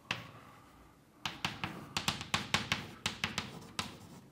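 Chalk tapping and scraping on a blackboard as symbols are written, a quick run of sharp taps starting about a second in.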